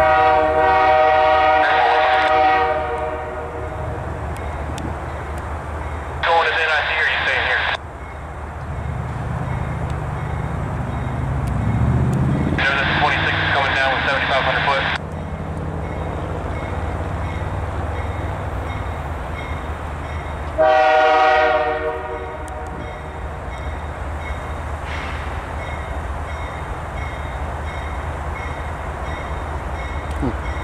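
Air horn of an approaching GE C44-9W diesel freight locomotive sounding four blasts: a long chord of about three seconds at the start, then three shorter blasts spaced several seconds apart. A steady low diesel rumble from the train runs underneath.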